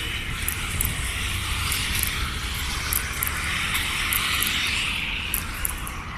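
Road traffic going by: a steady low rumble, with tyre and engine noise that swells and fades twice as vehicles pass.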